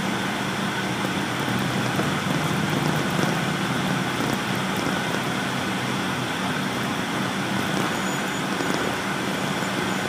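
Steady interior running noise of a 2006 MCI D4500CL diesel coach in motion on a wet road: a low, even engine hum under a hiss of tyres and road noise.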